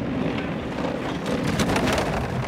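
Four-man bobsled running down the ice track, a steady rushing rumble from its steel runners on the ice. It swells louder about a second and a half in as the sled passes close by.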